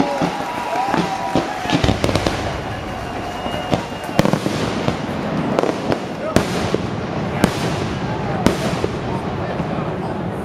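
Fireworks display: aerial shells bursting with sharp bangs, four of them in the second half, roughly a second or two apart, over a continuous crackle. Onlookers' voices can be heard with it.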